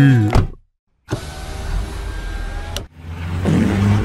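Cartoon car sound effect: a car engine rushing off, a steady noisy roar that cuts off suddenly, followed by a second rising rush. It opens with a short gliding cartoon voice sound and half a second of silence.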